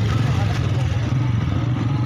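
A vehicle engine running with a steady low rumble, under the voices of a crowd of men.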